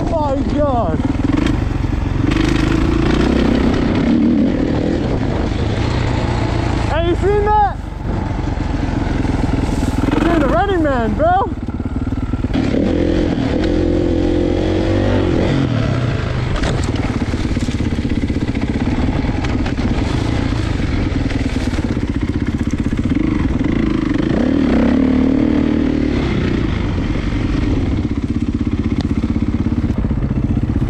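Kawasaki 450 single-cylinder four-stroke dirt bike engine running under a rider off-road, heard over steady wind noise. The engine revs up and back down twice, about seven and ten seconds in, with a short drop in loudness between.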